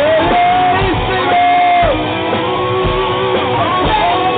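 Live rock band playing: a Mapex drum kit and guitar, with long held notes that bend in pitch.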